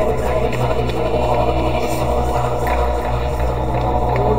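Live-looped vocal music from a loop station: a steady low droning voice with layered voices above it and a few faint percussive ticks.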